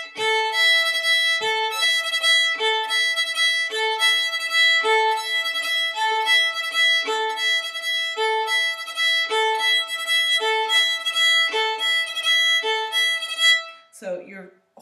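Solo fiddle bowed back and forth across two strings in a steady repeating triplet figure, the two notes alternating about once a second. This is the 'egg beater' cross-string bowing exercise played in triplets, done with a loose, relaxed bow wrist.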